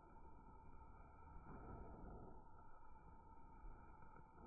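Near silence: a faint low rumble with a thin steady tone that drops out briefly midway.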